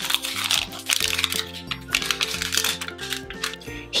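Plastic wrapping on an L.O.L. Surprise toy ball crinkling in a rapid patter of small crackles as it is peeled off by hand, over background music.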